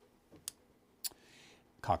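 A few small, dry clicks: two quick soft ones, then a sharper single click about a second in, followed by a faint hiss. A man's voice starts just before the end.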